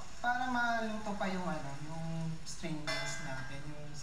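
A person's voice in long, drawn-out sounds that fall in pitch.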